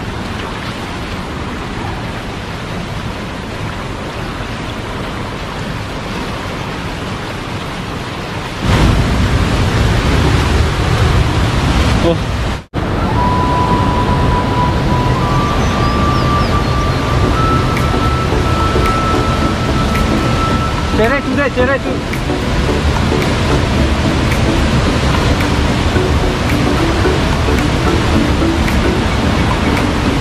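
Fast shallow stream water rushing over rocks, with splashing as someone wades through it. About nine seconds in, a louder, deeper rushing noise takes over. Later, a high steady tone steps up in pitch three times over several seconds.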